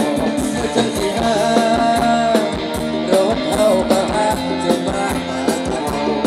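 Live band playing Thai ramwong dance music, with a steady, regular drum beat and a wavering melody line over it.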